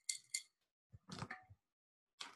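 A few small, sharp clicks with a faint ring, two close together near the start, then a softer short sound about a second in.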